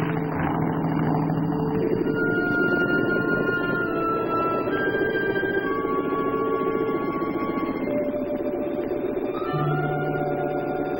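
Film-score background music of long held notes that step from pitch to pitch, with a rising glide near the end. For the first two seconds a steady aircraft-engine drone runs under it, then fades.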